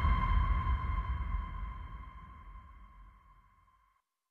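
Closing drone of a trailer's background score: a held, ringing high tone over a low rumble, fading out over about three seconds.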